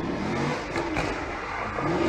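Car engine revving during drifting, its pitch rising and falling several times.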